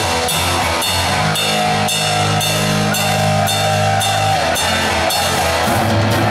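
Heavy metal band playing live, opening a song: drum kit, bass guitar and distorted electric guitar on a slow, heavy riff of held low notes, with drum and cymbal hits about twice a second.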